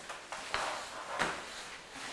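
Chalk writing on a blackboard: a few sharp taps as the chalk strikes the board, with short scratchy strokes between them.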